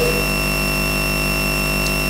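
A steady, unchanging electronic buzz made of many fixed tones: a glitch in the recording in which a tiny piece of audio is stuck and repeating, taking the place of the sermon's speech.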